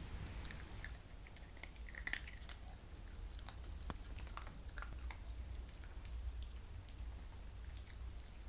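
A small puppy chewing a treat: faint, scattered little clicks and crunches, thickest in the first half.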